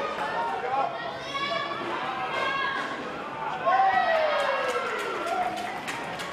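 Voices calling out and chattering in a large indoor sports hall, with one long call falling in pitch about four seconds in.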